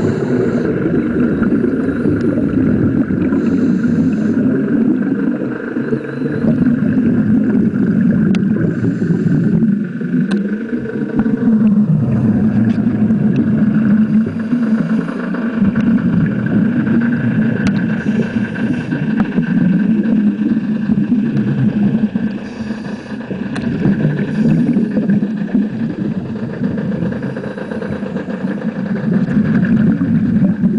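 Muffled underwater rumble picked up by a camera underwater on a scuba dive: water moving over the housing and exhaled scuba bubbles rising, swelling and easing every few seconds, with a few faint clicks.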